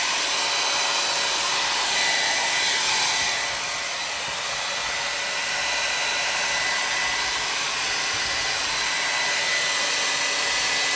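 Handheld hair dryer blowing steadily, a rush of air with a thin steady whine, drying a wet watercolour wash on paper.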